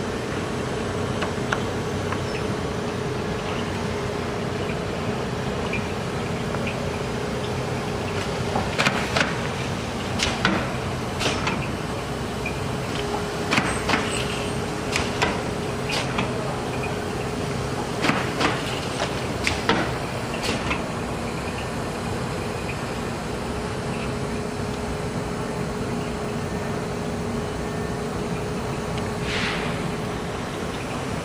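A James Burns BB38A Wire-O closing machine running with a steady hum, while it is worked to close wire-bound books. A run of sharp clacks comes between about nine and twenty-one seconds in.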